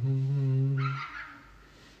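A man's low closed-mouth hum, an 'mm-hmm', held steady for about a second on one pitch after a shorter, lower first note, then fading out.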